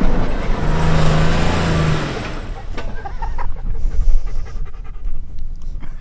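Pickup truck engine pulling under load up a sand dune, its steady note dropping away after about two seconds as the truck struggles at the steep crest. A dog panting follows.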